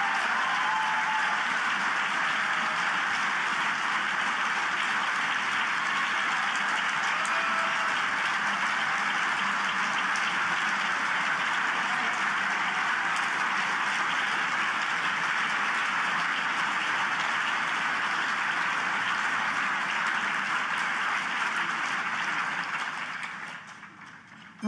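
A large crowd applauding steadily in a standing ovation, dying away shortly before the end.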